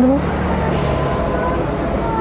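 Steady low rumble of a motor vehicle running close by.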